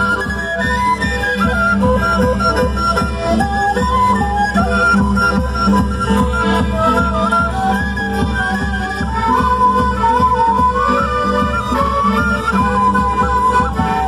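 Live traditional Andean festival music for the Qhapaq Negro dance. Several melody instruments play a winding tune over a steady drum beat.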